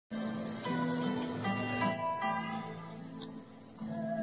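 Cicadas droning in one steady high-pitched tone, the loudest sound throughout, over quiet instrumental music with long held notes.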